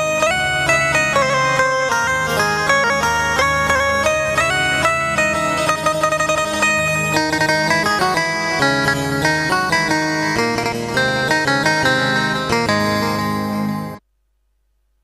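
Roland Juno-G synthesizer keyboard playing a custom Indian-style tone: a fast melody of short, plucked-string-like notes over a sustained chord and bass accompaniment. It cuts off suddenly at the end.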